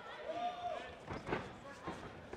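A faint shouted voice from ringside, then two thuds about half a second apart, from strikes landing in the clinch between two Muay Thai fighters.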